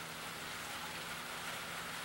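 Steady background hiss with a faint, even low hum; no distinct event.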